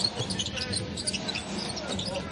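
Live basketball court sound: the ball bouncing on the hardwood and sneakers giving short high squeaks as players move, with faint voices from the court.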